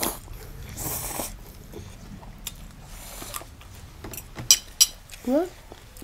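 Rice noodles slurped off a fork, two short slurps in the first second or so, followed by a few sharp clicks of eating and cutlery. A short rising voice comes near the end.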